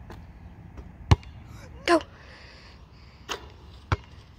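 A basketball striking the hoop and bouncing on an asphalt court: one sharp knock about a second in, the loudest, then two more bounces near the end.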